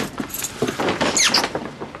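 Clothes rustling as two people embrace, with a few brief high squeaks about a second in.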